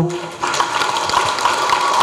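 Audience applause in a hall, starting about half a second in as a steady rush of clapping.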